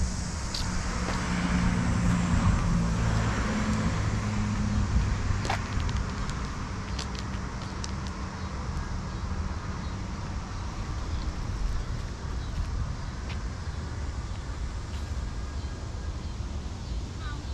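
Street traffic: a motor vehicle passes during the first few seconds, its low engine hum swelling and fading out after about five seconds, over steady road noise.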